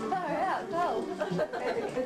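Several voices talking over one another: indistinct family chatter.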